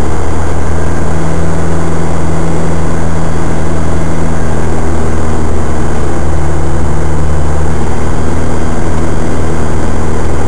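Off-road 4x4's engine running steadily at low revs, a loud, even low drone heard from inside the cab with no revving up or down.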